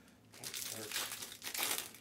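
Plastic wrapping crinkling and rustling as it is handled, loudest near the end.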